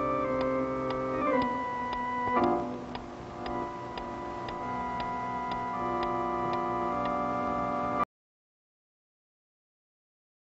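A clock ticking about twice a second under held chords of background music. The chords change about one and a half seconds in and again about two and a half seconds in, and all sound cuts off abruptly about eight seconds in.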